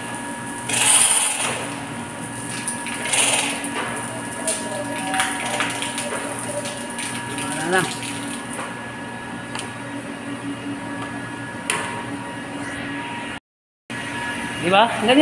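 Air and water spitting out of an opened air-vent valve on a stainless steel pipe of a reverse osmosis system, in hissing spurts that are loudest about a second in and again around three seconds. This is trapped air being bled from the line. It plays over the steady hum of the plant's pumps.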